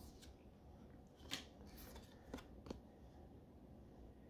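Faint handling of Pokémon trading cards: about five soft clicks and slides of card stock, the clearest about one and a half seconds in.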